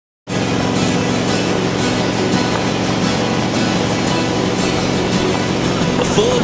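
After a brief dropout at the very start, background music plays: the opening of a country song, before the vocals come in, over a steady, even rushing noise.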